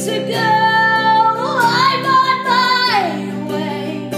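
Song: a woman singing one long held note that slides up in pitch about halfway through, over acoustic guitar chords.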